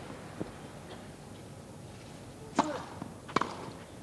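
Tennis balls struck by rackets on a grass court: a sharp serve about two and a half seconds in, the return less than a second later, with a faint knock of a ball bounce about half a second in.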